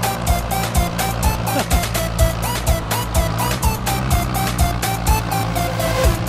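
Electronic dance music with a fast steady beat, a thumping bass and a short repeated synth melody.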